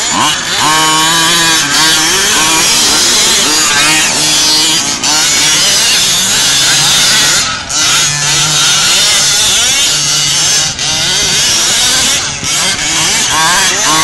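Small two-stroke engines of radio-controlled off-road buggies revving hard as they race over sand, the pitch climbing and falling again and again.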